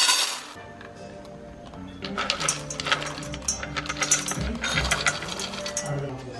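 Dry dog kibble poured into a stainless-steel dog bowl. The pellets rattle and clink densely on the metal for about three seconds, starting about two seconds in, after a brief loud noisy burst at the very start.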